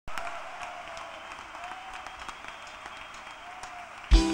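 Audience applauding: a steady run of many scattered claps.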